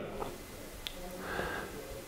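Quiet pause in a man's speech: low room tone, a faint click just before the middle, and a soft breath in the second half.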